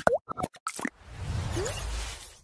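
Cartoon-style sound effects of an animated intro: a quick string of pops and plops, one of them a sliding 'bloop', then from about a second in a low rumbling whoosh.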